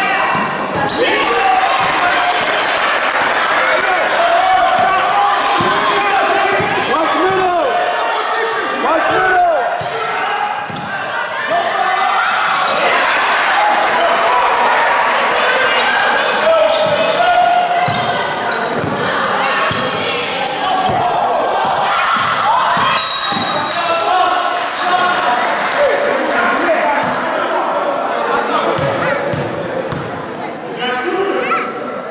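Spectators and players calling out and shouting over a live basketball game in a large gym, with a basketball bouncing on the hardwood court at times.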